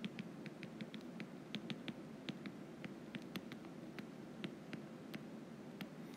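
Stylus tip tapping and scratching on a tablet's glass screen during handwriting: faint, irregular light clicks, a few each second.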